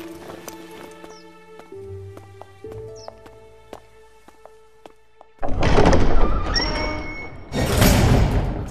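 Soundtrack music with slow held notes, then about five and a half seconds in a sudden loud noise effect lasting over a second, and another loud one near the end.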